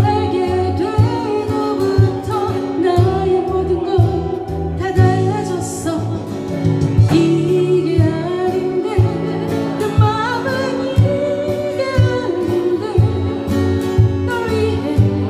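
A woman singing a Korean ballad into a microphone over acoustic guitar accompaniment, with a steady low beat running under the melody.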